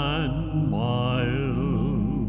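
A male cantor singing a slow communion hymn with a wide, even vibrato over sustained accompanying chords.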